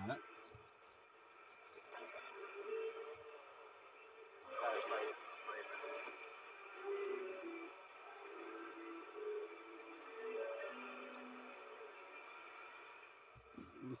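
CB radio receiver on AM, tuned to channel 6 (27.025 MHz), playing steady static with faint, garbled voices in it and a few short steady whistles at different pitches.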